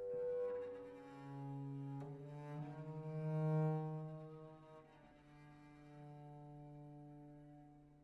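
Viola da gamba playing slow, held bowed notes in a low register, quiet and swelling and fading, the loudest note about three and a half seconds in.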